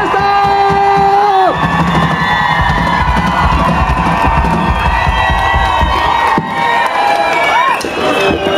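Concert crowd cheering and whooping, with one long held tone over it for about the first second and a half.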